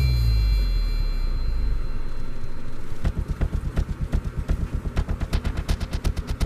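Film soundtrack: a deep boom slides down in pitch and fades over the first two seconds or so. About three seconds in, a fast, low pulsing beat starts, several pulses a second.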